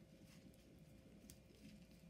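Near silence with a few faint, soft taps and scrapes of a wooden popsicle stick stirring thick soil paint made of soil, glue and water.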